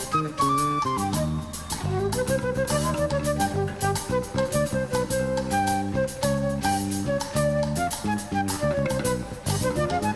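Live band playing an instrumental salsa groove: timbales and cowbell keeping a steady rhythm under a bass line and a flute melody.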